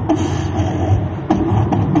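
Vocal beatboxing into a handheld microphone: a continuous low bass line with a few sharp snare-like clicks over it.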